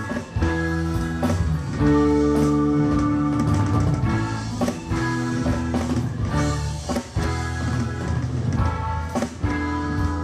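Live rock band playing an instrumental passage: electric guitars over keyboard and drums, held notes with a steady beat.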